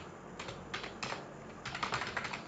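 Computer keyboard keys being typed on: about six separate keystroke clicks at an uneven pace, spaced out at first, then a quicker run near the end.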